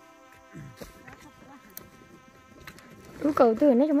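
A flying insect, a fly or bee, buzzing close to the microphone, loud from about three seconds in, its pitch wavering up and down as it moves.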